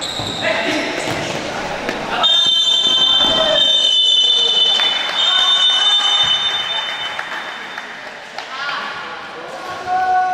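Referee's whistle blown for full time: a long, high, steady blast starting about two seconds in and lasting about four seconds, with a slight break near the end. It sounds over voices and ball knocks echoing in a sports hall.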